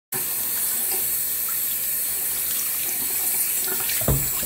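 Bathroom sink faucet running in a steady stream, the water pouring over a small puppy held beneath it and splashing into the basin.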